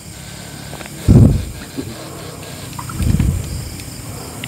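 Wading steps in shallow creek water: two dull, low sloshes, one about a second in and a weaker one about three seconds in.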